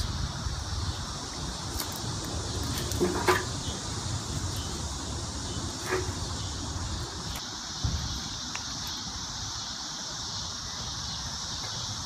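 Cut pine branches rustling and knocking as they are handled and dropped into a wheelbarrow: a few short, separate noises. Under them runs a steady high insect buzz and a low outdoor rumble.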